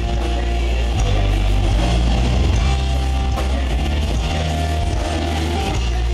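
Live rock band playing loud, with heavy bass and drums under electric guitar.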